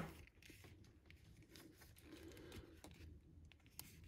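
Near silence with faint handling noise as fingers try to clip a small plastic accessory onto a plastic action figure's sleeve. There is a sharp click at the very start, another small click near the end, and faint rustling and ticks between.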